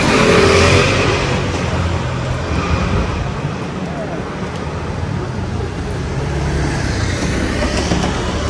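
Street traffic noise, with a car going by near the start and again near the end over a steady low rumble.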